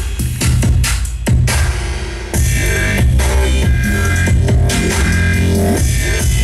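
Electronic music with strong, heavy bass playing loudly through a Philips 2.1 multimedia speaker system and its subwoofer during a bass sound test. The loudness dips briefly about two seconds in.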